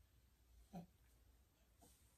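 Near silence: quiet room tone, broken once a little under a second in by a brief, soft vocal grunt.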